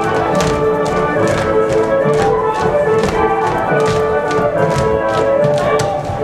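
Polish folk dance music with sustained melody notes, over the stamping and tapping of dancers' boots on the stage floor.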